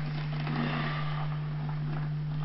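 A steady low hum under a faint even hiss, with no speech.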